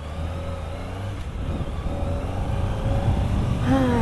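Sport motorcycle engine pulling away and accelerating, growing gradually louder.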